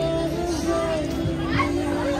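Music with long held notes playing over the chatter of a crowd of shoppers, children's voices among them.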